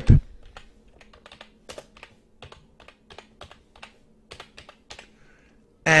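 Typing on a computer keyboard: a run of short, irregularly spaced key clicks, fairly faint.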